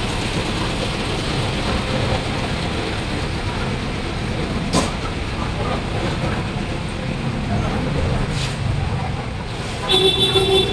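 Busy city street ambience: a steady din of traffic and distant voices, with one sharp knock about five seconds in.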